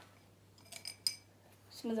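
A few light clinks with a brief ring, about three-quarters of a second to a second in, as small hard paint pots and painting things are handled on the tabletop. A girl starts speaking at the very end.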